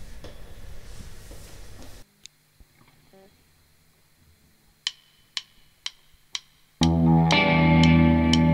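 A low, noisy rumble cuts off abruptly about two seconds in, leaving near silence. Four sharp clicks about half a second apart count in, and a rock band with distorted electric guitar and bass starts loud near the end.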